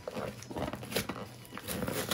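Packing tape being peeled and torn off a cardboard shipping box, with the cardboard rustling and scraping under the hands in a series of short rasps.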